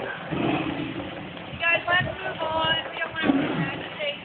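Two tigers roaring at each other as they scuffle, a rough low rumbling noise. A person's high-pitched voice calls out briefly about halfway through.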